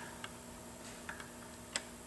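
A few faint, sharp metallic clicks, the clearest one near the end, as a Ford 351W-based 408 stroker's oil pump driveshaft is gripped in needle-nose pliers and worked up and down in the block, checking that it slides freely.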